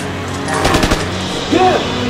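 A short burst of automatic rifle fire, rapid shots for about half a second, over background music. A brief cry that rises and falls in pitch follows about a second later.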